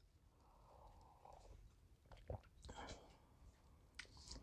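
Near silence with faint sipping of coffee from a mug, followed by a couple of small soft clicks.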